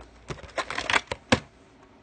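A plastic VHS clamshell case being handled, giving a run of sharp clicks and rattles, with the loudest single click a little past the middle.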